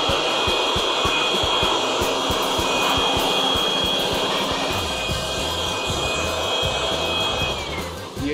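Handheld electric leaf blower running at full speed right at the microphone: a steady rushing blast with a high motor whine. Near the end it is switched off and the whine slides down in pitch as it spins down.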